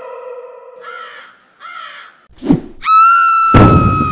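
Edited-in sound effects over music: a held tone dies away about a second in, two short rasping calls follow, then a sharp thump, and a high held tone begins with a loud crash just after.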